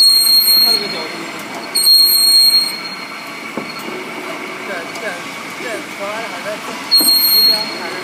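Electric split-frame pipe cutting and beveling machine running, its rotating ring driving the tool bits around the steel pipe. A loud high-pitched squeal of the cutting comes in short bursts: in the first second, around two seconds in, and again near the end.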